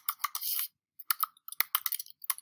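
Typing on a computer keyboard: a run of quick keystrokes with a brief pause about a third of the way in.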